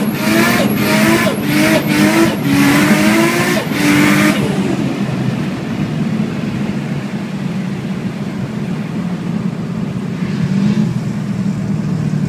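Nissan Skyline R34 GT-T's turbocharged straight-six heard from inside the cabin, its pitch rising quickly and dropping back again and again, about every two-thirds of a second, each rise with a rush of hiss. After about four and a half seconds it settles to a steady, lower running note, with a brief small rise near the end.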